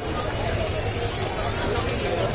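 Confused commotion in a damaged shop: overlapping distant voices over a steady, dense clattering noise.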